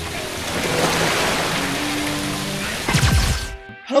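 Logo intro music ending in a rising noise swell, then a falling bass sweep about three seconds in, cut off abruptly just before the end.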